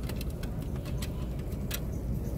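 Handling noise on a handheld phone microphone: a steady low rumble with a scatter of sharp, light clicks.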